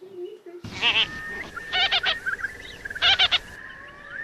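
Wading birds calling at a shallow pond: three short bursts of a wavering, bleating-like call about a second apart, over a steady high whistling note.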